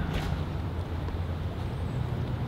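Steady low outdoor background rumble, without any distinct event.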